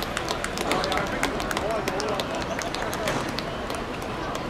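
Running footsteps of several players on a hard outdoor court: many quick, sharp steps, with faint voices calling across the pitch.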